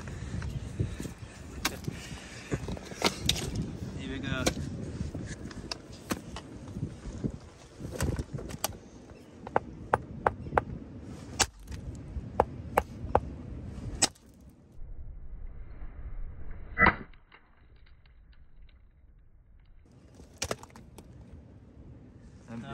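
A hammer striking a rounded rock nodule held against shale: a run of about ten sharp blows, roughly one or two a second, then a single louder blow with a brief ring. The nodule is being split open to look for an ammonite inside.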